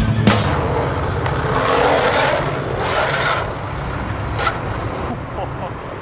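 Skateboard hitting a metal stair handrail with a sharp clack, then a long scraping grind and rolling noise on concrete for about three seconds, with another knock about four and a half seconds in.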